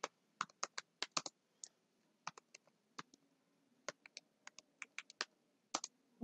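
Computer keyboard typing: about twenty short, irregular key clicks as a line of text is typed out.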